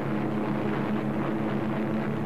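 Steady drone of propeller-driven piston-engine aircraft flying in formation, a constant low engine tone over a hiss of airflow.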